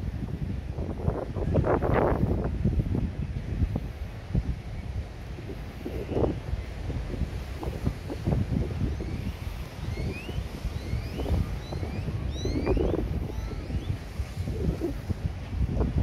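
Wind buffeting the microphone: a low, gusty rumble that swells and falls throughout. From about nine to thirteen seconds in, a series of short, high rising chirps sounds faintly above it.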